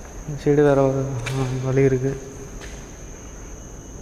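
A steady high-pitched insect trill, typical of a cricket, runs throughout. A man's voice sounds over it for about two seconds near the start.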